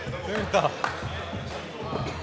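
A man's voice exclaiming over background music, with a few sharp knocks about half a second in.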